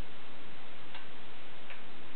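Steady hiss with two light ticks, about a second in and near the end, from a hollow-body electric guitar being handled and lightly picked, without clear notes.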